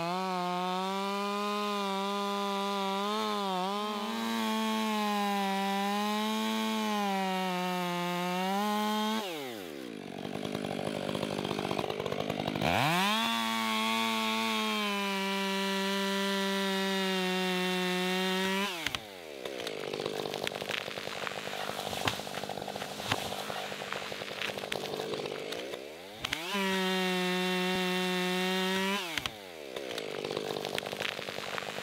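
Stihl two-stroke chainsaw cutting into a walnut trunk at full throttle, dropping to idle about nine seconds in. It revs back up to full throttle for about six seconds, idles again, then runs at full throttle once more for about three seconds near the end before falling back to idle.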